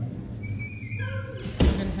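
A single sharp thump about one and a half seconds in, with a short ring after it.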